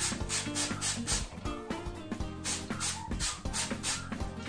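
A hand-held plastic trigger spray bottle squirting water in repeated short pumps onto a GORE-TEX shell jacket, over background music with a regular shaker-like beat.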